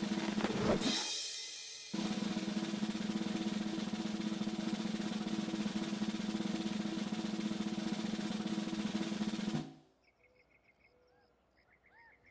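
A snare drum roll on a soundtrack, the circus suspense roll before a stunt. It opens with a brief crash that fades, then runs as one steady, even roll for about eight seconds and cuts off suddenly.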